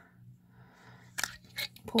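Metal mason-jar lid pulled off a glass candle jar: a few quick sharp clicks and scrapes a little over a second in.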